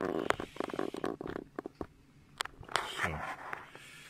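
Handling noise as a thick glass telescope mirror is lifted and turned over in the hands: a rustle at the start, then a run of small clicks and taps, with a few sharper ticks later on.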